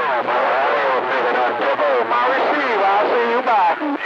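Voice transmission received on a CB radio and heard through its speaker, talk running on without a pause while the incoming signal is strong.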